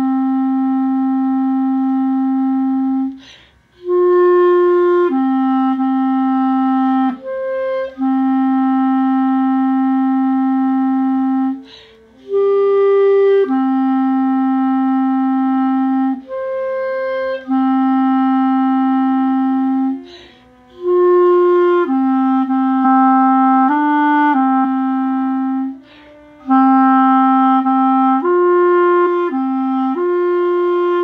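Solo clarinet playing a tenor saxophone part's melody an octave higher, in six-eight time: a single line of long held notes and shorter moving ones. The player breathes in short gaps about every six to eight seconds.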